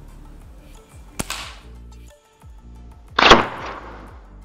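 An air rifle fires with a sharp crack about a second in. About two seconds later a much louder bang follows as a small balloon is hit and bursts. Background music plays throughout.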